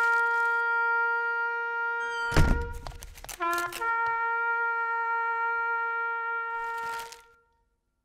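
A wind instrument playing two long held notes at the same pitch. Between them, about two and a half seconds in, comes a thump and a few quick notes. The second note fades out near the end.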